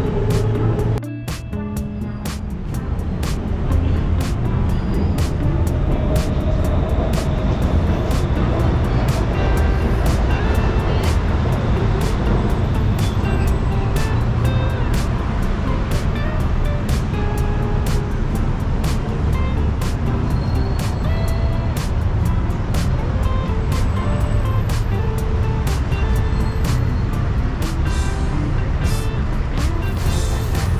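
City street ambience: a steady low traffic rumble with music playing over it. Short clicks run throughout, and the sound drops briefly about a second in.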